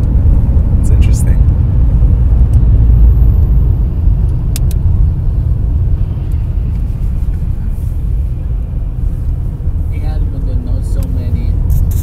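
Steady low rumble of road and engine noise inside a moving car.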